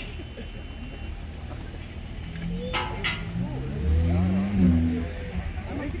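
A large coach's diesel engine revving, its pitch rising from about two seconds in and loudest around four to five seconds in, as the bus moves off. Two sharp clicks sound about three seconds in, and crowd voices are heard around it.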